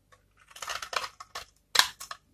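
Utility-knife blade scraping and shaving a bar of dry soap, the brittle flakes crackling as they come away, then a sharp crunch just before the end, the loudest sound here.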